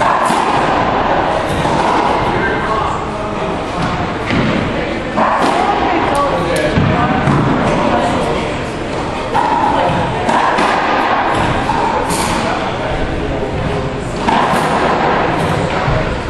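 A racquetball struck with a racquet and hitting the walls and floor of an enclosed racquetball court: a string of sharp, irregularly spaced hits that echo around the court.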